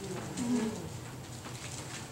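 A brief, low hummed murmur of a voice about half a second in, over quiet room tone in a church sanctuary.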